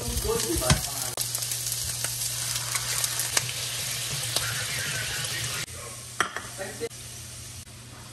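Balls of food dropped one by one into hot oil in a nonstick wok and sizzling loudly, with metal tongs clicking against the pan. The sizzle cuts off suddenly about two-thirds of the way through, and a few light clicks follow.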